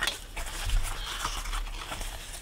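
Scratch-off lottery tickets of thin card stock being handled and shifted on a wooden table: a sharp click at the start, then faint rustling and light contact noises.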